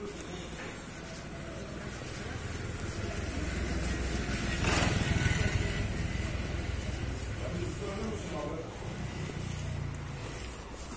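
Motorcycle engine on the street, growing louder to a peak about halfway through and then running on more quietly, with people's voices.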